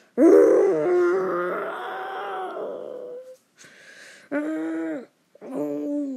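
A person's voice imitating dinosaur roars: one long roar of about three seconds, then two short ones about a second apart.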